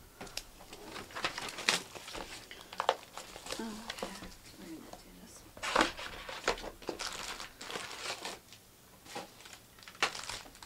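Trading-card pack wrappers being torn open and crinkled by hand, an irregular run of crackling and rustling with a few louder crinkles.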